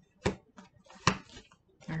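Tarot cards handled on a tabletop: two sharp taps about a second apart, with faint rustling and ticks between them, as cards are drawn and laid down.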